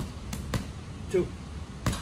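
Gloved punches landing on a hanging heavy bag: a few dull thuds, the loudest near the end.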